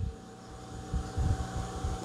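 Low background rumble with a faint steady hum, heard in a pause between spoken sentences.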